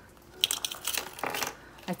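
Clear plastic zipper envelopes in a ring binder crinkling and rustling as they are handled, with a few light taps, from about half a second in until about a second and a half.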